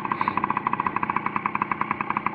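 Dirt bike engine idling with a steady, rapid pulse.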